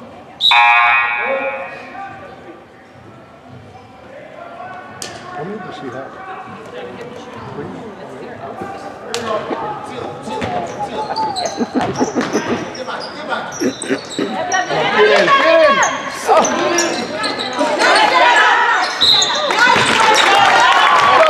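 Basketball game in a gymnasium: a loud horn-like tone sounds about half a second in and lasts a second or so. Then a basketball bounces on the hardwood floor, with spectators' voices rising louder in the second half.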